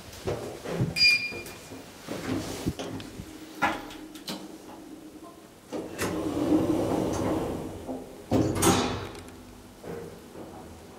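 Elevator door and car mechanism sounds: a short beep about a second in, scattered clicks and knocks, then a door running for about two seconds from around six seconds in, and a louder rush near the end.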